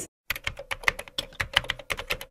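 Computer keyboard typing sound effect: a rapid run of key clicks, roughly nine a second, starting about a quarter-second in, over a faint steady tone.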